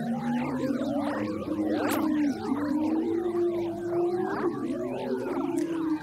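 Sonification of Earth's magnetic field waves, recorded by four satellites as the solar wind strikes the magnetosphere and turned into audio. A sustained low hum drifts slowly up and back down, with many warbling tones gliding up and down above it.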